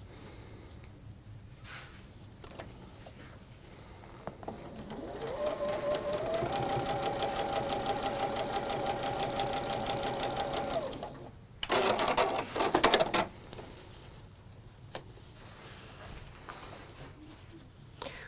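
Juki sewing machine stitching: its motor whine rises in pitch as it speeds up about five seconds in, runs steady with rapid needle ticking for about five seconds, then stops. Shortly after, a few loud scratchy bursts of packing tape being pulled off a roll in the next room.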